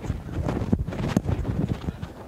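Rustling and uneven bumps on the microphone, heavy in the low end: microphone handling noise.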